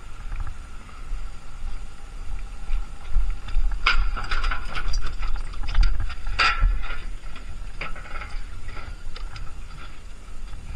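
A dirt bike is pushed up a metal loading ramp onto a steel hitch carrier. From about four seconds in there is a run of clanks, knocks and rattles from the ramp and carrier, over a steady low rumble.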